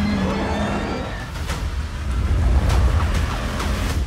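Film-trailer sound design: a deep, continuous rumble with three sharp hits spread through the second half and sweeping whooshes over it.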